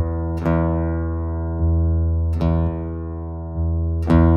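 Acoustic guitar heard through a passive under-saddle pickup and a Radial HDI direct box: a low bass note plucked and left to ring, struck again twice. Twice the bass swells without a new pluck as the box's high/low input-impedance switch is flipped, warmer and fuller on the high-impedance setting.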